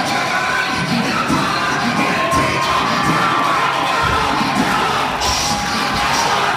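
Church congregation shouting and cheering in praise, many voices at once, loud and unbroken.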